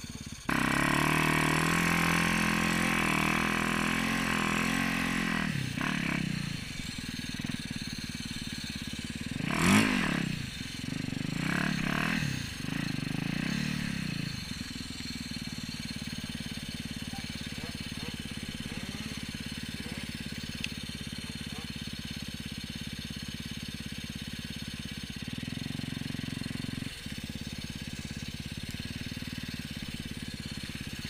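Yamaha YZ450FX single-cylinder four-stroke dirt-bike engine on a snowbike conversion, revving hard under load for the first few seconds, then a few short throttle blips and one sharp rev about ten seconds in, the loudest moment. From about fifteen seconds on it settles to a steady, lower idle.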